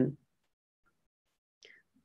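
A pause in a woman's speech. Her last word trails off at the very start, then there is near-total silence, broken only by one faint, brief sound shortly before she speaks again.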